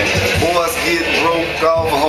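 A man rapping a freestyle over a hip-hop beat, his voice riding on a steady drum pulse.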